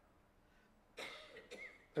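Near silence for about a second, then a person gives a short cough, with a smaller second one just after.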